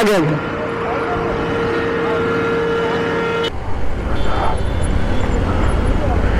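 A vehicle horn held on one steady tone for about three seconds, cutting off suddenly, over road traffic; after it, a low rumble of wind and engine.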